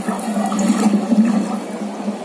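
Rushing water sound effect played over loudspeakers with a projected table animation. It swells through the middle and then eases off.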